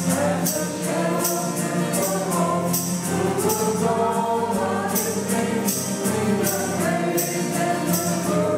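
A small group of voices singing a hymn together, accompanied by acoustic guitar and piano, with a jingling percussion sounding on the beat about twice a second.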